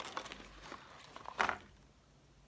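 Faint crackling of plastic packaging as a soft swimbait is handled and pulled out, with one short sharp click about one and a half seconds in.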